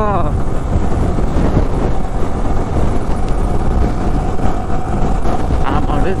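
Heavy wind noise on the rider's microphone over a Yamaha sport motorcycle's engine, riding at speed and picking up from about 60 to 75 km/h.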